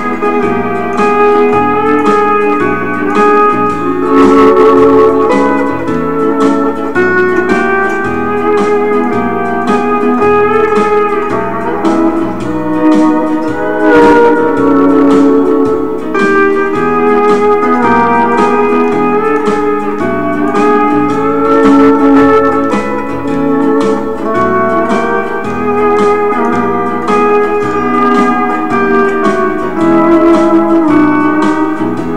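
Fender steel guitar playing a country melody with gliding, sliding notes over a recorded backing track with a steady bass rhythm.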